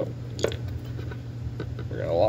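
Handling clicks from a plastic headlight-bulb locking collar being worked onto a D1S LED bulb: one sharp click about half a second in, then a few fainter ticks, over a steady low hum.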